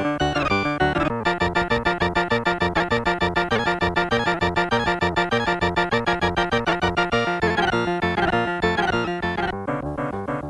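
Amiga 2000 computer playing a quick piece of instrument music from its keyboard: a fast, even stream of notes with repeated falling runs.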